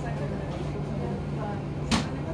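A steady low engine hum with faint background voices, and one sharp knock near the end that is the loudest sound.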